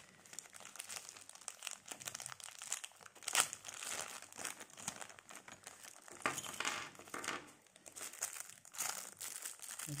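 Thin clear plastic bag crinkling and crackling as it is handled and opened by hand, in irregular bursts of rustle, the loudest about three and a half seconds in.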